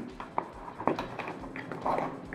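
A few faint clicks and taps of hands handling an electrical wire and a small wall box.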